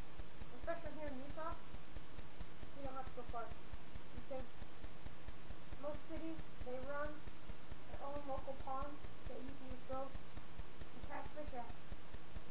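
Indistinct voices talking on and off over a steady, low, rapidly pulsing buzz.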